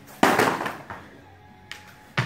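Heavy battle ropes slammed down onto the gym floor once, about a quarter of a second in: a sharp slap with a short rattling tail. A lighter knock follows near the end.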